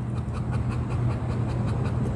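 Chow Chow puppy panting in quick, regular breaths over a steady low hum.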